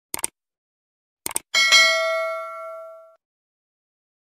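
Sound effects of an animated subscribe outro: two quick clicks, two more clicks about a second later, then a single bell-like ding that rings for about a second and a half as it fades.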